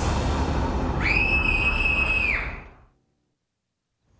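Spooky soundtrack of music and effects: a loud, low rumbling din with one high, shrill note held for about a second, then fading out to silence just before the end.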